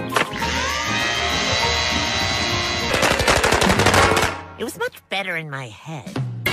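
Cartoon sound effects of a machine switched on by its lever: a rising whir that settles into a steady hum, then about a second of very rapid machine-gun-like rattling, then a falling wind-down near the end.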